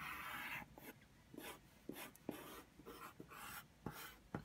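Red colored pencil drawing on patterned paper: a faint scratching, one longer stroke at the start, then a series of short, quick strokes.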